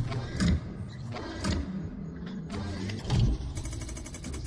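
Mechanical sound effects for an animated metal logo: a continuous low machine-like rumble with heavy metallic hits about half a second, a second and a half and three seconds in, and a run of quick clicks near the end as the parts lock into place.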